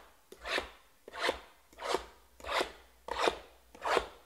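A hand rubbing across cardboard card boxes in regular rasping strokes, six in about four seconds.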